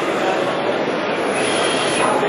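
Steady, loud din of a busy trade-fair hall: machinery running mixed with the murmur of crowd voices, with no distinct knocks or tones standing out.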